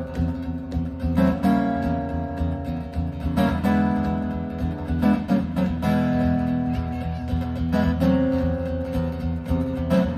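Solo steel-string acoustic guitar playing boogie-woogie: a steady, driving low bass line with bright chords struck over it every couple of seconds.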